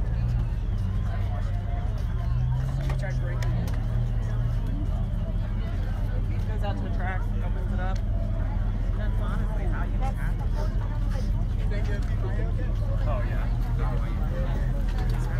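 A car engine idling steadily, a low hum that edges up slightly in pitch a few seconds in, under the chatter of a crowd of people.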